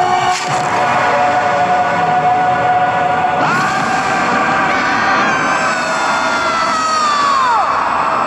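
Animated-film soundtrack: dramatic orchestral score over a dense stampede din. About three and a half seconds in, a cartoon lion's long, high scream starts suddenly, holds, and drops away in pitch near the end as he falls.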